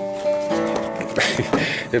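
Acoustic guitar being picked, single notes ringing on and overlapping. In the second half a burst of rustling noise comes in over the notes.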